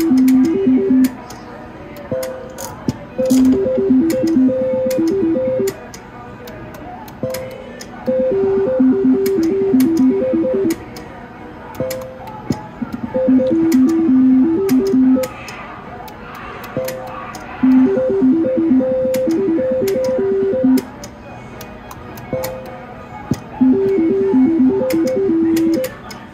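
IGT Double Top Dollar reel slot machine playing its short beeping spin tune with each spin, repeated about every four and a half seconds, with sharp clicks in between.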